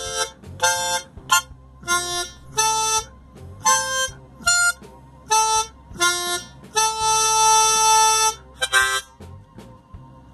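Diatonic harmonica playing about a dozen short test notes and chords, then one chord held for about a second and a half near the end. This is a tuning check of the reeds after brass was scraped from the 3 reed to lower its pitch.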